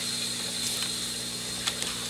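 Steady low electrical hum with a faint high whine, and a few light clicks in the second half as the camera is handled up close.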